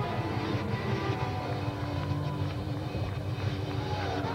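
A live band playing an upbeat dance song, with guitar and drums, at a steady volume.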